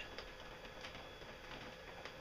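Faint, irregular ticking of raindrops starting to fall.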